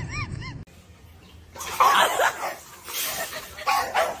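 A dog barking in three loud outbursts, about two, three and four seconds in. They are led in by a few short, high rising-and-falling whines in the first half-second.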